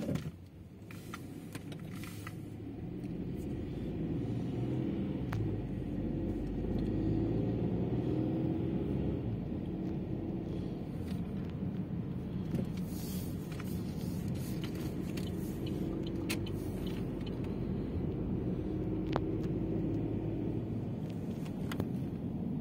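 A car driving, heard from inside the cabin: steady engine hum and tyre and road rumble, growing louder over the first few seconds and then holding steady. A brief knock at the very start.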